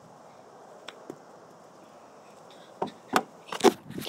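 Quiet outdoor background with two faint clicks about a second in, then a run of loud knocks and rubbing near the end as the recording phone is grabbed and handled.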